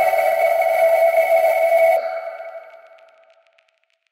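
Electronic music: a sustained drone of several steady held tones that thins out about halfway and fades away to silence, with faint flickering ticks as it dies.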